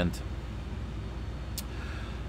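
A brief pause in speech filled by a steady low background rumble, with a faint click about one and a half seconds in.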